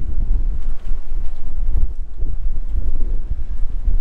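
Wind of about 20 to 25 miles an hour blowing across the camera microphone: a loud, uneven low rumble.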